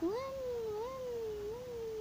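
A young girl's voice making a long, wavering "vuuum" in imitation of an airplane engine. The pitch swoops up at the start, then rises and falls in slow waves.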